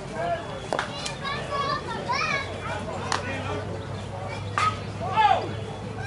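Several people calling and chattering across an open softball field, with a few sharp knocks in between.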